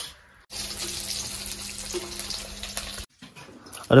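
Tap water running into a steel bowl of tomatoes and dried red chillies. It starts suddenly about half a second in, runs steadily, and cuts off abruptly about a second before the end.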